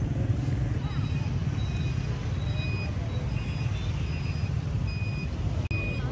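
Steady low rumble of engines in stop-and-go traffic, with a vehicle's electronic warning beeper sounding short high beeps about once every 0.7 seconds from about a second in.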